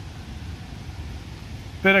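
Steady low rumbling background noise with no distinct events. A man's voice starts just before the end.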